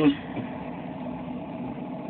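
Car engine idling, a steady low hum heard from inside the cabin.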